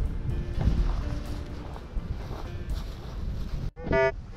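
Strong wind buffeting the microphone, a low rumbling roar, with background music faintly underneath. It cuts off suddenly near the end, and a short pitched electronic tone follows.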